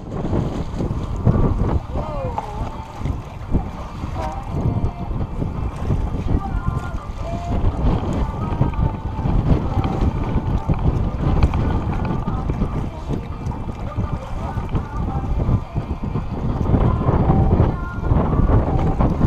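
Wind buffeting an action-camera microphone on an open boat, a steady low rumble, with faint voices underneath.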